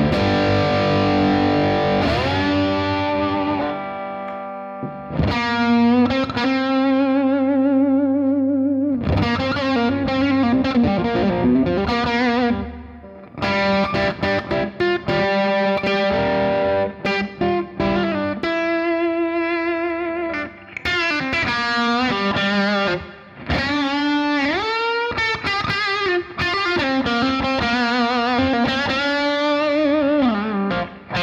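Electric slide guitar in open tuning, a Gibson Les Paul with dog-ear P90 pickups played through a Boss Katana amp's crunch channel for a lightly driven, valve-amp-like tone. Sustained notes waver with slide vibrato and glide up and down between pitches, in phrases with short gaps.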